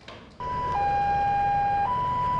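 A two-tone siren alternating between a higher and a lower note, each held about a second, starting about half a second in over a steady low background rumble.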